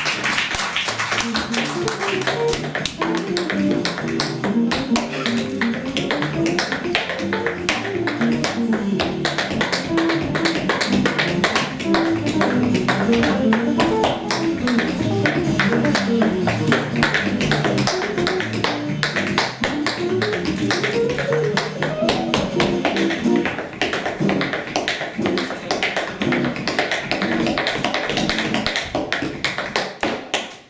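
Tap shoes tapping out fast, continuous tap-dance steps over instrumental music with a stepping low melody line.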